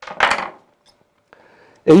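Short metallic clatter of a small copper bubble cap and its parts being handled and taken apart by hand, lasting about half a second near the start.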